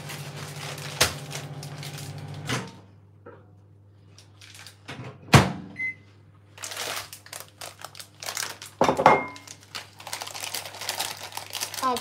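Kitchen work sounds: a steady low appliance hum cuts off with a click about two and a half seconds in, then scattered knocks and clatters of kitchen things, the loudest a sharp knock about five seconds in. Near the end a plastic bag is crinkled as it is handled.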